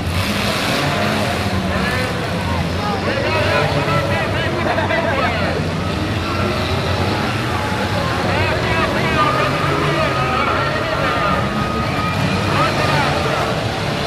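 Several demolition derby cars' engines running and revving, under a crowd's overlapping shouts and cheers.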